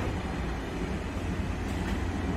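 Steady low rumbling noise with a light hiss over it, and a brief click right at the start.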